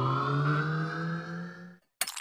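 Intro-animation sound effect: a tone with several overtones that slowly rises in pitch and fades out shortly before the end.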